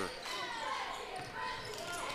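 Basketball game in play in a gymnasium: the ball bouncing on the hardwood court among players' footsteps, with crowd noise in the hall.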